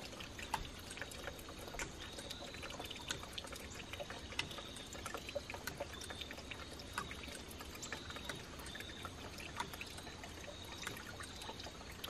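Faint trickling and dripping water with scattered small, irregular clicks.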